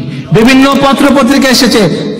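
A man speaking Bengali in a continuous monologue: speech only, with a brief pause at the start.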